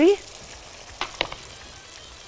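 Tomatoes frying in a pan: a steady, soft sizzle, with two sharp clicks about a second in.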